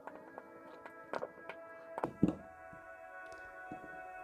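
Several sharp knocks and clicks of a hand screwdriver driving small screws into a metal reservoir bracket, the loudest knock a little after two seconds in, over steady background music.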